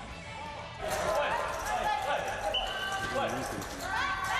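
Blindfolded blind-football players shouting their 'voy' call to one another, starting about a second in, mixed with thumps of the sound-making ball being kicked and dribbled on artificial turf.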